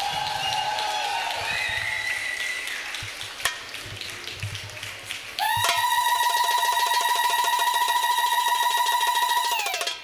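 Live band playing a brief flourish, then a single loud high note held steady for about four seconds, starting about halfway through.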